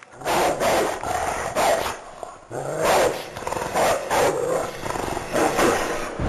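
Dog-like animal growls and barks played as a sound effect, in a string of short bursts roughly half a second apart, with a brief lull about two seconds in.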